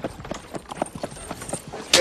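Horses' hooves clopping on a dirt street as a horse-drawn wagon passes, an uneven run of clops several to the second. A loud, sharp crack comes right at the end.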